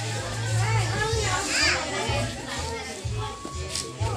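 Many young children's voices chattering and calling out over one another, with music and its low, pulsing bass playing in the background.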